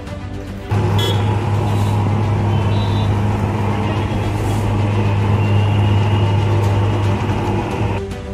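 Truck-mounted insecticide fogging machine running with a loud, steady low buzzing drone, starting abruptly about a second in, as it puffs out fog for mosquito control. Background music plays underneath.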